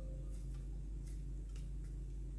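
Faint soft ticks and rustles of hands rubbing sticky glutinous rice dough off the fingers over a stainless steel bowl, over a steady low hum.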